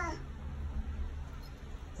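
The tail of a Bengal cat's drawn-out meow, falling in pitch and ending in the first moment, followed by a low steady outdoor rumble.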